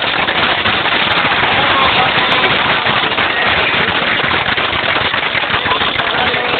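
Audience applauding: dense, steady clapping from a large crowd.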